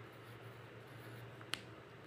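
Quiet scratching of a pencil writing digits on paper, with a single sharp click about one and a half seconds in, over a low steady hum.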